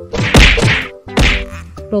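Two slapstick hit sound effects, the first about a third of a second in and the second just over a second in, each a hard whack marking the robot beating someone.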